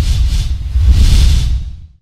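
Logo-intro sound effect: a deep rumble with swooshes sweeping over it, fading out near the end.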